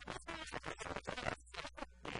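A woman talking, in quick broken phrases.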